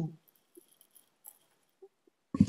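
Near silence, broken by a few faint, short clicks.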